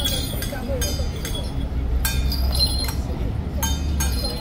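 Irregular metallic clinks, each with a short high ring, about seven in four seconds, over a steady low street rumble.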